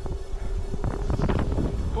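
Strong wind buffeting the camera microphone: a heavy low rumble that gusts harder about a second in.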